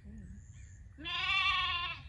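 A lamb bleats once, a single loud call of about a second starting halfway through, steady in pitch with a slight waver.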